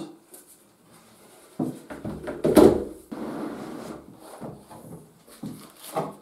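Handling of a black moulded plastic tool case and the bandsaw's stand while it is unpacked: a cluster of knocks and clunks as they are set down and the case is opened, loudest about two and a half seconds in, then softer rustling and a few light clicks.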